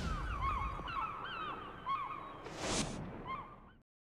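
Gulls crying, a run of short hooked calls over a low rumble, with a whoosh near the start and another a little before three seconds in. The sound cuts off suddenly just before the end.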